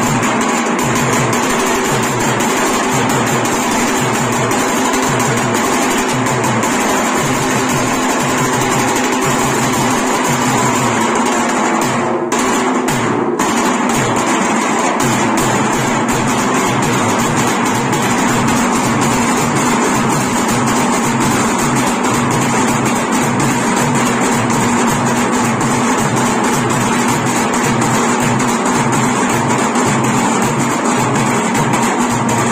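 A street drum band of large steel-shelled barrel drums and a frame drum, beaten with sticks in a steady, driving rhythm, with a steady pitched drone running alongside.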